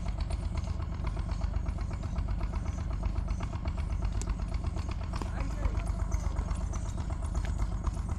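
A small engine running steadily at idle, with faint voices in the background. About halfway through comes a single sharp crack as a cricket bat strikes the ball.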